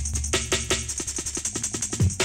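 Short slices of a sampled drum break retriggered on a fast clock by an ALM Squid Salmple Eurorack sampler. They form a stuttering run of drum hits, about eight a second, over a steady low tone, and the slice changes as the cue sets are scrolled through.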